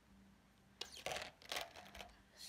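A few short knocks and rustles of handling close to the phone's microphone, bunched about a second in, over a faint steady hum.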